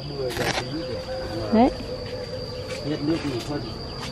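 An insect chirring in one steady high tone throughout, with a brief burst of noise near the start.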